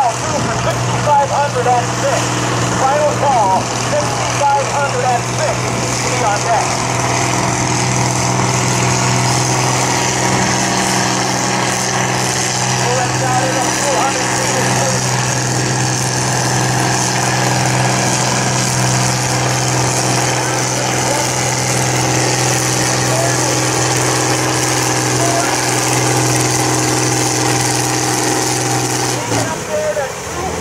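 Farm tractor engine pulling a weight-transfer sled under heavy load at a held-down crawl of about 3 mph, its note loud and steady for almost the whole pull. The engine drops away near the end as the pull stops.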